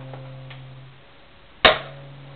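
Electric guitar through a small practice amplifier: a single note rings and fades, then a sharp loud click comes about one and a half seconds in, after which the note sounds again.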